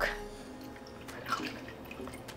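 Almond milk poured from a measuring cup into a plastic blender cup: a quiet trickle and splash of liquid.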